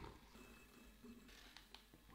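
Near silence, with only a faint thin whine from a handheld milk frother whipping instant coffee, sugar and water into foam in a glass.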